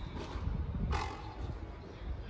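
A single sharp knock about a second in, a frontenis ball striking the court, with a short ring in the hall, over a low steady rumble of room noise.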